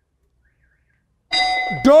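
Near silence for just over a second, then an electronic answer-reveal chime rings out with a steady tone. A man's voice starts just before the end.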